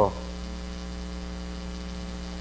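Steady electrical mains hum with a ladder of even overtones, unchanging throughout.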